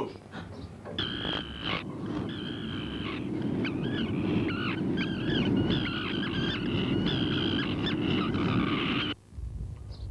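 Wailing, moaning cries that waver and bend in pitch, over a dense low rumble. The sound starts about a second in and breaks off abruptly about a second before the end.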